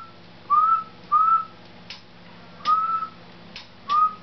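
A man whistling short notes into a CB radio microphone, about four of them, each rising slightly and then held briefly. On single sideband the whistle drives the transmitter and amplifier to full output for a power-meter reading. A steady low hum runs underneath, with a few faint clicks between the notes.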